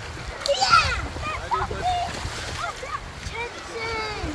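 Children's excited high-pitched voices calling out at the water's edge, with splashing of feet in shallow surf underneath.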